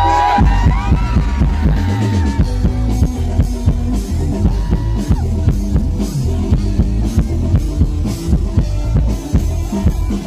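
Loud live band music played through a concert sound system, driven by a steady drum-kit beat.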